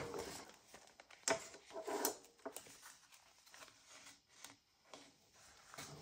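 Faint rustling and a few light taps of paper and card as the pages of a handmade paper folio are handled and turned over, with short quiet gaps between the sounds.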